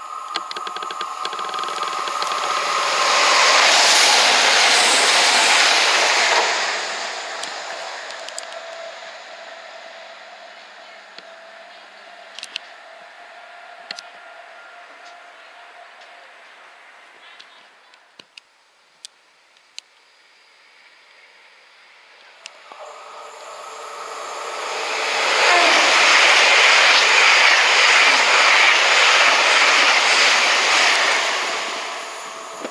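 Class 220 Cross Country Voyager diesel multiple unit passing through the station: it grows loud within the first few seconds and fades away by about ten seconds. After a quieter stretch with a few sharp clicks, a GWR Class 802 IET approaches from about 23 seconds and runs past close by, loudest near the end.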